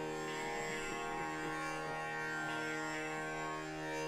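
Tanpura drone: steady, sustained tones ringing on without a break.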